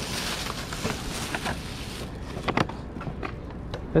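Thin plastic bag rustling as it is pulled off a cardboard box, followed by a few light knocks and taps of the box being handled, over a low outdoor hum.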